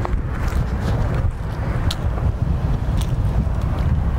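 Wind buffeting the microphone: an irregular low rumble, with a few faint clicks.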